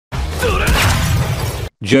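A loud crashing, shattering sound effect from an anime fight clip lasts about a second and a half and cuts off suddenly. A voice starts speaking right at the end.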